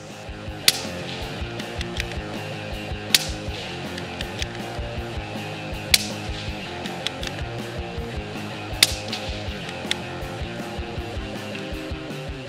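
Four single shots from a suppressed Tikka T1X UPR rifle in .17 HMR, fired about every two and a half to three seconds, each a sharp crack, heard over background music.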